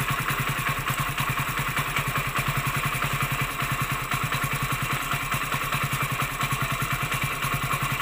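Hero Splendor Plus BS6's single-cylinder four-stroke fuel-injected engine idling with a steady, even beat. The idle speed holds with the throttle-body idle-adjust nut loosened, because the idle is set by the factory, around 1700 rpm.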